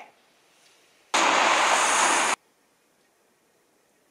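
A burst of steady, even noise, like a rush or hiss, lasting about a second. It starts about a second in and cuts off abruptly, with near silence before and after it.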